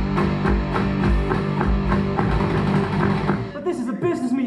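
Live rock band playing: guitars, bass guitar and drum kit, with a steady drum beat under sustained guitar chords. Near the end a note slides down in pitch.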